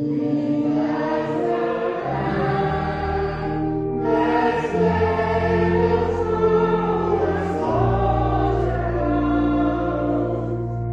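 A hymn: voices singing together over an accompaniment of sustained chords and long-held bass notes that change every two to three seconds.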